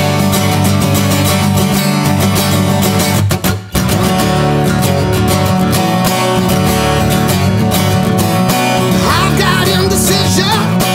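Solo acoustic guitar, fast strumming and picking with a brief stop about three and a half seconds in. A man's singing voice comes in near the end.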